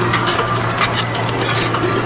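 Car cabin noise while driving: a steady low hum with many irregular clicks and rattles close to the microphone.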